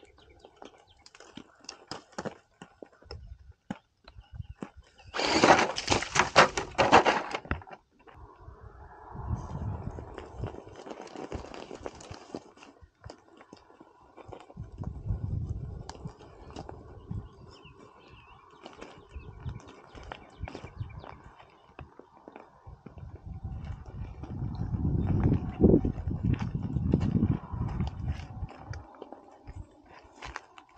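An Axial SCX10 Pro RC rock crawler clambering over loose rock, its tyres scrabbling and small stones clicking and knocking. A loud noisy burst comes about five seconds in and lasts a couple of seconds, and there are several stretches of low rumble later on.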